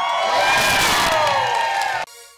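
A large crowd cheering and whooping, many voices overlapping in falling calls; it cuts off suddenly at the end.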